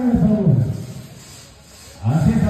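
A man's voice over loudspeakers trails off about half a second in, followed by a pause of faint background noise.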